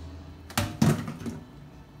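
Two knocks about a third of a second apart, the second louder: something slippery, handled with gloved, buttery hands, knocking against a hard kitchen surface.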